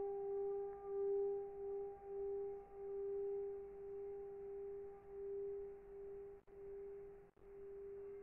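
Tibetan singing bowl sung by rubbing a wooden stick around its rim: one sustained ringing tone with a fainter higher overtone, swelling and fading in a slow wavering pulse and gradually growing quieter.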